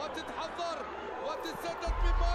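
Football match broadcast audio playing quietly: a commentator's voice over stadium crowd noise, rising a little near the end.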